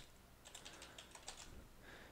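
Faint typing on a computer keyboard: a quick run of keystrokes starting about half a second in, as a short word is typed.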